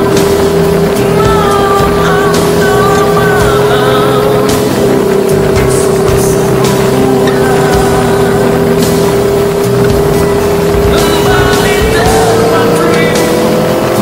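Aprilia sport motorcycle's engine running at a steady cruising speed, its pitch shifting slightly about five seconds in, then climbing steadily near the end as it accelerates. Music with singing plays over it.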